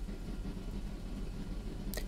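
A faint steady low hum of background noise, with no distinct events.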